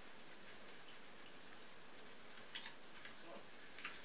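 Low steady hiss with a few faint clicks in the second half.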